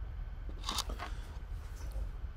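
Soft mouth sounds of a person tasting whiskey: a brief noisy smack or breath about half a second in, then a couple of faint clicks, over a low steady room hum.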